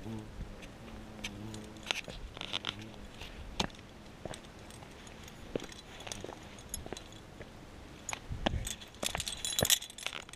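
A bee buzzing close by for the first couple of seconds. Then scattered metallic clinks of climbing hardware and gear-handling noise, busier and louder near the end.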